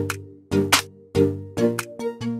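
Background music with a steady electronic beat, about one beat every 0.6 seconds, under pitched notes.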